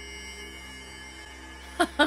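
Slow, ominous horror-film score: soft sustained tones held steady over a low hum. A short laugh breaks in near the end.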